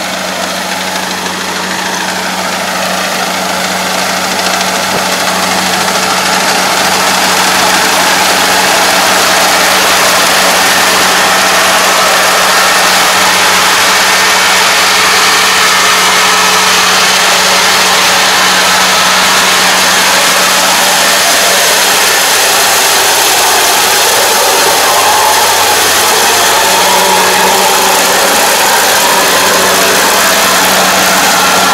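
Kubota ARN460 rice combine running, its diesel engine and machinery giving a steady drone with a constant low hum as it crawls through the paddy on its tracks. It grows louder over the first several seconds as it comes close, then holds steady.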